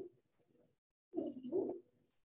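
A short two-note cooing bird call about a second in.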